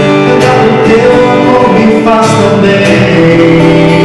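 A man singing with a strummed acoustic guitar accompanying him, in long held notes.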